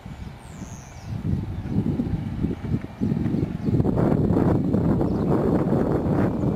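Wind buffeting the microphone as a low, uneven rumble. It builds about a second in and turns louder and gustier from about three seconds on.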